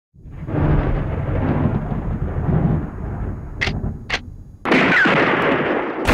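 A long, low rumble that swells in just after the start, with two sharp clicks near the middle, then a sudden loud burst of noise about three-quarters of the way through.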